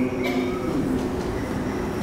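Steady background noise of the hall picked up through an open microphone, with no voice in it.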